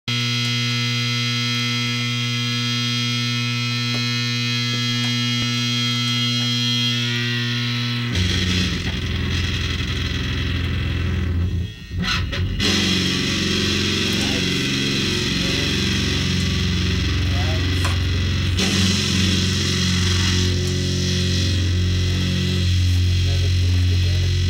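Heavily distorted electric guitar through an amp stack: a long held chord rings for about eight seconds and fades. The guitar then switches to chugging, rhythmic low riffs, with a brief drop-out about halfway through.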